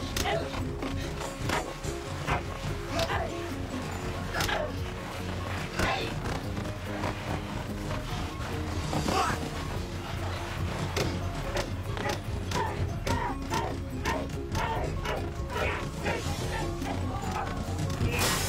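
Fight-scene film soundtrack: background music with repeated sharp punch and kick impacts every second or two, and the fighters' shouts.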